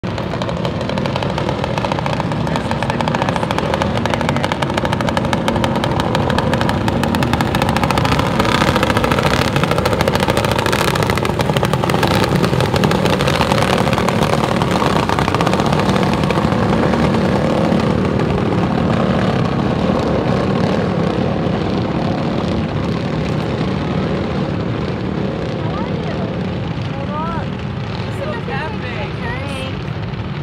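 A pack of racing lawnmowers running hard in a heat, a steady dense engine drone that swells as they come past and eases off toward the end.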